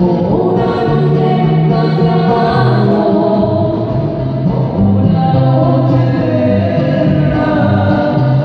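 Live band music amplified through stage loudspeakers: singing over acoustic guitar accompaniment, continuous and steady in level.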